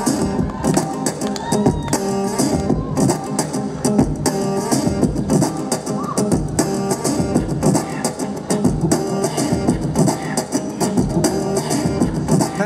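Acoustic guitar played with percussive slaps and taps on its body, building a steady rhythmic beat of repeated sharp hits under strummed chords.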